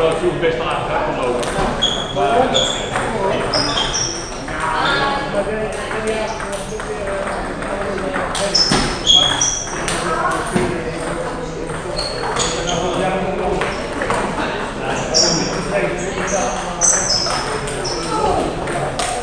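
Table tennis balls being hit back and forth across several tables at once: quick, irregular clicks of ball on bat and table, many with a short high ping, ringing in a large hall over background chatter.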